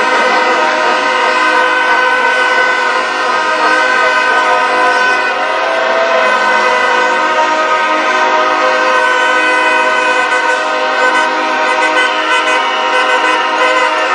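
Many horns blown at once, a steady, unbroken din of overlapping held tones.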